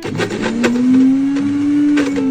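Countertop blender motor running at high speed through a strawberry smoothie, its whine climbing in pitch over the first second as it spins up, then holding steady.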